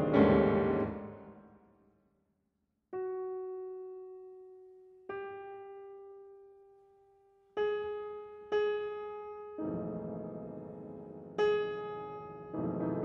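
Solo concert grand piano playing contemporary music. A loud chord at the start dies away into about a second of silence. Single notes are then struck a couple of seconds apart, each ringing and slowly decaying, and fuller chords return near the end.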